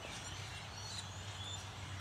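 Faint calls of birds over a steady low hum.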